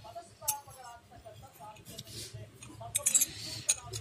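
A spoon clinking against its container while fenugreek seeds soaked in water are stirred. There is a sharp clink about half a second in and a quick run of clinks near the end.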